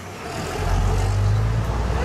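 Open-top bus engine heard from the upper deck, a low steady hum that grows louder about half a second in as it works harder.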